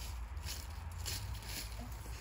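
A few faint rustles over a steady low rumble.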